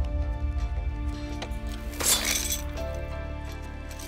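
Background score music with a steady low drone, and about halfway through a short metallic chain rattle as a kusarigama, a sickle on a chain, is pulled free from a tree trunk.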